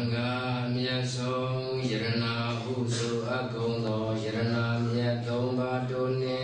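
A Buddhist monk chanting on one held, nearly unchanging pitch, in phrases with short breaks about once a second.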